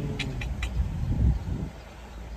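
Low steady rumble inside a car cabin, with three quick light clicks in the first second.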